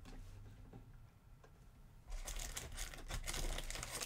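Near silence for about two seconds, then a run of crinkling and rustling of plastic wrapping as trading card packaging is opened by hand.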